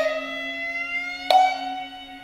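Japanese traditional string accompaniment: a bowed kokyū holds one steady note while a plucked shamisen sounds twice, once at the start and again a little over a second in, each ringing note sliding slowly upward in pitch.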